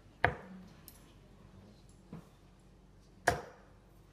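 Three steel-tip darts thudding into a bristle dartboard one after another, the first and last strikes loud and sharp and the middle one fainter.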